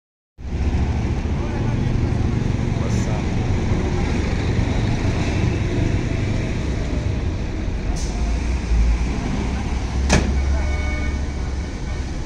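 Diesel coach bus engine idling with a steady low rumble, broken by a few sharp clicks, the last one about ten seconds in the loudest.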